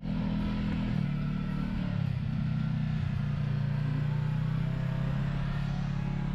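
Side-by-side UTV engine running close by at a steady note, its pitch shifting slightly once or twice in the first couple of seconds.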